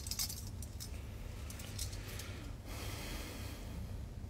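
Faint metallic clinking and jingling, like a gold chain bracelet and rings moving on a hand, a quick scatter of small clicks in the first two seconds. A soft rustle follows about three seconds in.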